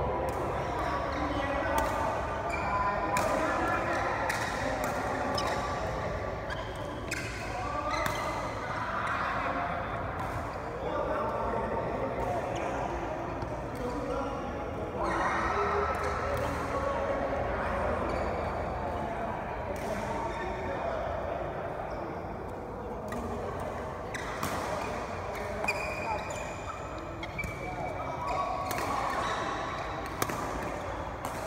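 Badminton rackets striking a shuttlecock during a doubles rally: sharp hits at irregular intervals, echoing in a large hall.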